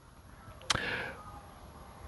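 A single sharp click about two-thirds of a second in, followed by a short hiss that dies away quickly.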